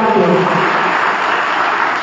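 Audience applauding, the sound dying away near the end.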